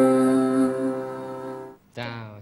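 The last held note of a song, a steady sustained chord, fading out and stopping just before the end.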